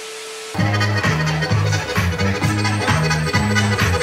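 Music with a heavy, repeating bassline and a steady beat, played over a DJ's PA speakers as a sound test; it cuts in about half a second in, after a short steady hiss with a single held tone.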